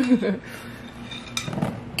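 Wet gel water beads clicking and rattling against a plastic bin and bowl as hands scoop through them, with a couple of sharp clicks, one about a second and a half in.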